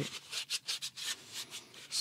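A damp cloth rubbed over a black camera housing in a quick series of short wiping strokes, a dry swishing friction.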